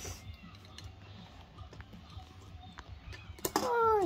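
Light plastic clicks and taps of small Lego pieces being handled and fitted onto a toy Lego car on a tabletop. Near the end a child's voice starts a drawn-out yawn that falls in pitch.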